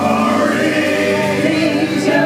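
Live band playing with several voices singing together, held notes over acoustic guitar, upright bass and accordion.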